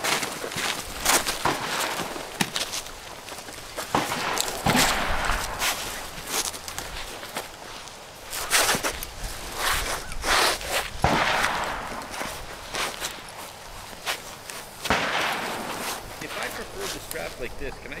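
Footsteps on gravel and scattered clicks and knocks of rifles and gear being handled as shooters take their positions, with indistinct voices in the background.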